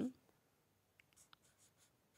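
Marker pen writing on paper: faint, short pen strokes, a few of them clustered about a second in.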